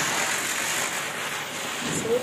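A chakri ground-spinner firework burning on the floor, giving a steady hiss as it spins and sprays sparks.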